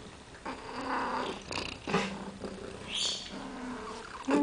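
A domestic cat purring and making a few short sounds close to the microphone, in separate bursts about a second apart.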